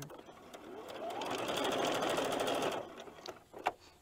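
Domestic electric sewing machine stitching lace onto fabric: it speeds up about a second in, runs steadily for under two seconds, and stops, with two short clicks after it.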